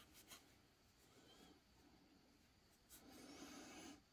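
Near silence with faint rubbing of a tissue over a small red-copper 5-won coin held in the fingers, with a few light ticks at the start and a slightly louder stretch of rubbing near the end.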